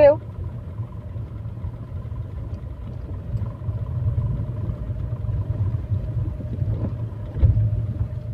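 Tata Tigor running in second gear, heard from inside the cabin: a steady low rumble of engine and road noise.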